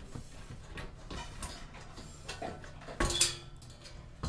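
Perforated side panel of a PC tower being worked loose and pulled off its case: light scattered clicks and rattles, then a louder clunk with a short ring about three seconds in.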